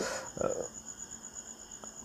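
A steady, high-pitched trill that pulses rapidly, like a cricket, heard behind a man's brief hesitant "uh".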